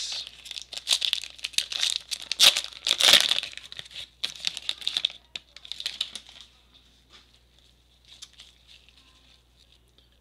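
A Panini Prizm football card pack wrapper being torn open and crinkled, a dense crackling that is loudest about three seconds in. After about six seconds it fades to faint handling of the cards.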